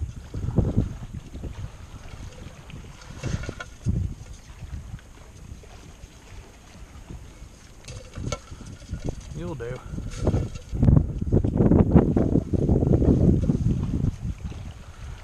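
Wind buffeting the microphone, mixed with footsteps in wet mud and marsh grass. The noise is irregular and grows louder over the last few seconds.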